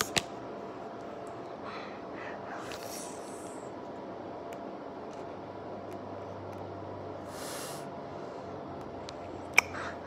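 Quiet breathing through the nose while biting at a plastic jelly pouch, with one short, airy breath out about three quarters of the way through. Light clicks come at the start and near the end, over steady low room noise.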